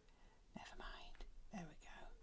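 Very quiet sounds of small craft scissors snipping at a die-cut paper flower, with a faint whispered murmur under the breath.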